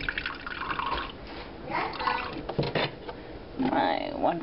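Vegetable broth being poured from a measuring cup into a pan of butter-coated couscous, the liquid splashing and dripping in irregular bursts.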